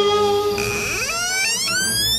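Background music: a long held note ends about half a second in, then a tone glides upward in steps to a high pitch.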